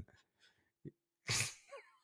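A man's single short, breathy burst of stifled laughter about a second and a half in, with a faint click just before it.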